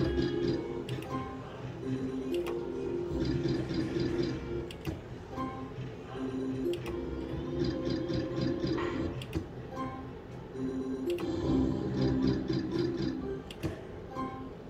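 Novoline Book of Ra Classic slot machine playing its free-spin game music. Bursts of rapid ticking come back about every four seconds as each spin runs and its win is credited.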